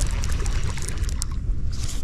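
Lake water lapping and splashing against a drifting kayak's hull, with wind rumbling on the microphone.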